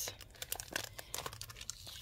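Clear plastic die packaging crinkling, with scattered light ticks, as it is handled and pressed flat on a mat.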